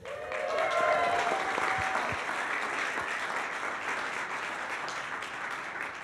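Congregation applauding, swelling at the start and tapering off near the end.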